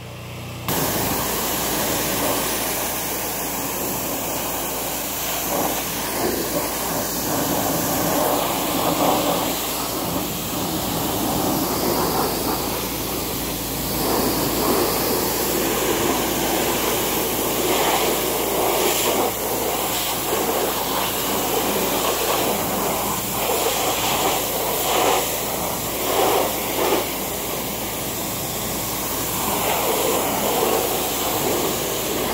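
Pressure washer jet spraying onto a zero-turn mower's wheel and deck, rinsing off truck-and-trailer wash. A steady hiss of spray starts under a second in and swells and dips as the jet moves over the surfaces.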